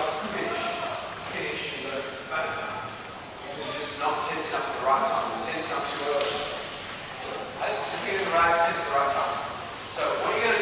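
Many people talking at once in a large, echoing gym hall, with a few sharp knocks among the voices.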